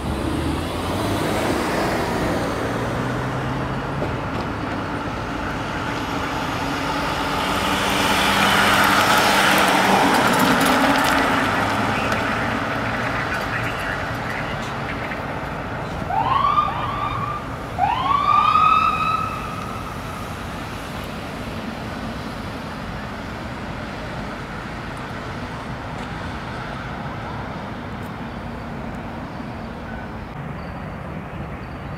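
Fire engine driving past, its engine and road noise swelling to a peak about eight to eleven seconds in. Around sixteen seconds the siren gives three quick rising whoops and then a longer one that rises and holds briefly.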